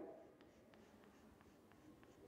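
Very faint chalk on a blackboard: a few light taps and scratches, roughly one every half second, as a thin freehand line is drawn.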